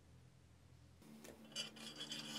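Quiet at first. From about a second in, steel parts of a homemade pipe-marking tool rub and scrape together as they are slid and fitted, with a sharp clink partway through.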